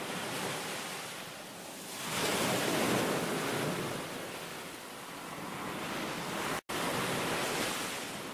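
Ocean surf, waves washing in with a rushing hiss that swells loudest about two to three seconds in and builds again later. It cuts out sharply for a split second near the end.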